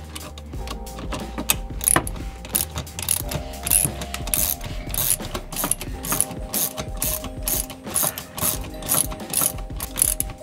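Socket ratchet clicking in quick repeated strokes, about two to three a second, as the bolt joining the short shifter to the shift arm is tightened.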